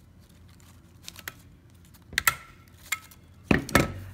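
A desktop stapler is pressed through layered scrapbook-paper strips, with light paper rustles and a sharp metallic clack about halfway through as the staple goes in. Near the end come two louder, heavier knocks as the stapler is set down on the table.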